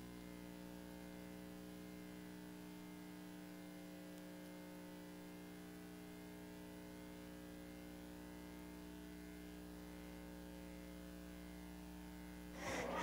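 Faint, steady electrical mains hum made of several even tones, with nothing else happening.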